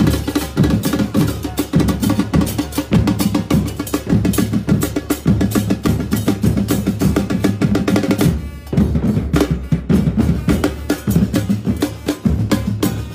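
A football supporters' drum section playing together: large bass drums and snare-type drums struck with sticks in a fast, driving rhythm. About eight and a half seconds in, the low drums drop out for a moment and then come back in.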